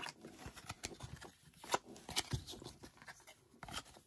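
Baseball trading cards being handled and sorted by hand: irregular light clicks and rustles as card stock slides and flicks against card stock.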